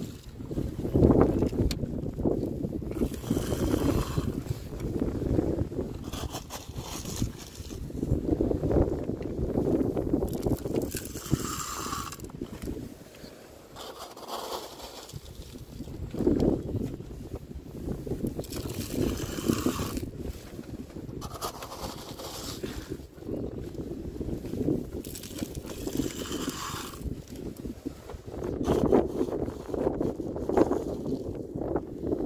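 Wind buffeting the microphone with a constant low rumble, and every few seconds gravel ballast scraping and pouring as a toy excavator scoops it and tips it into a model hopper car.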